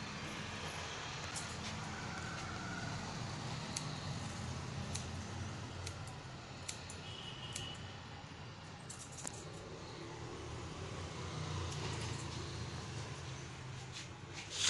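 Barber's scissors snipping hair in scattered, irregular clicks over a steady low hum.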